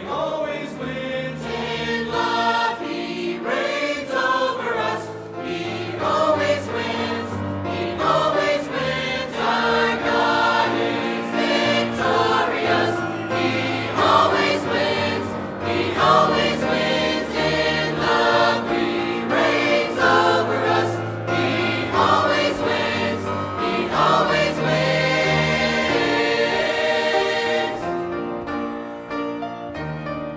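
A mixed church choir of men and women singing together, holding notes through a sustained, continuous passage.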